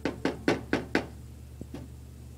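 Five quick, sharp knocks, about four a second, then two faint taps: a cooking utensil rapped against the rim of a frying pan.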